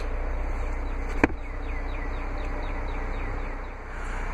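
Steady outdoor background noise with a low hum and a single sharp click a little over a second in. A faint run of short, falling chirps comes through the middle.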